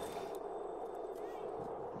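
Faint, steady outdoor street ambience: an even low background hum with no distinct events.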